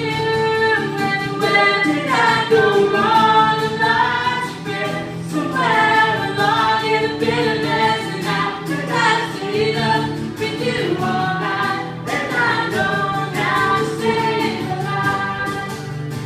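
Live acoustic song: a woman singing a melody over a strummed acoustic guitar, without a break.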